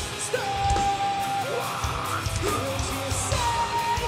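Metalcore band playing live: a singer holds long sung notes and yells over drums and guitars.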